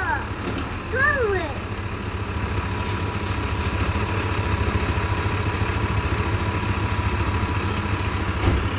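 Fire engine's diesel engine idling with a steady, even low rumble that grows a little louder after about two seconds. A thin, steady high tone runs alongside it.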